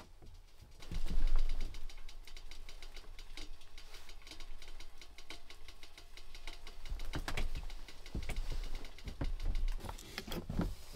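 A knife saws through crusty bread on a wooden board, the crust crackling, with a few dull knocks. Later the bread is set down on a metal stove top.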